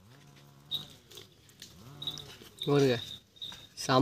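People's voices: a faint drawn-out call early on, then short louder bits of talk about three quarters through and again near the end.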